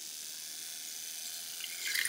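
Handheld battery milk frother whirring in a glass of liquid, mixing a powdered drink: a steady whir and swish of stirred liquid.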